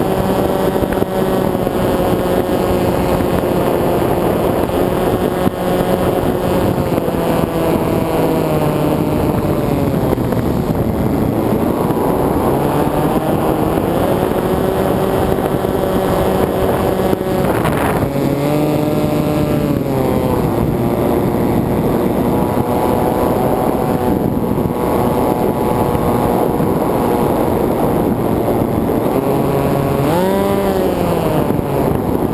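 Electric motor and propeller of an FPV flying wing heard from the onboard camera, a steady droning whine whose pitch rises and falls with the throttle, over wind rush on the airframe. The pitch sweeps up briefly about two-thirds of the way through and again at the very end.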